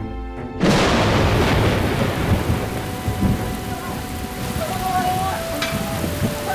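Heavy rain pouring down with low rolling thunder, coming in suddenly and loud about half a second in and then running as a dense steady roar.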